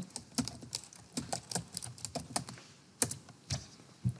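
Computer keyboard typing: a quick run of short keystrokes, then two louder key presses near the end.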